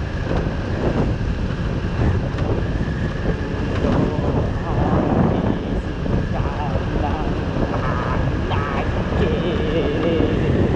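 Wind rushing over the microphone with the running of a Kymco Like 125 scooter's small single-cylinder engine beneath it, as the scooter rides along at a steady speed.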